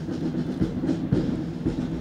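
Military band playing a march, the drums beating about twice a second over low brass.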